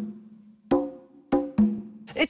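Conga drum struck four times, deep hits each with a short low ring, the last two close together.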